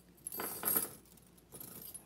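A chunky metal chain-link belt jangling as it is handled, its links clinking together in a burst about half a second in and again more faintly near the end.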